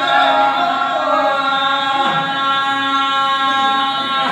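A man's voice holding one long, steady sung note in Telugu folk singing.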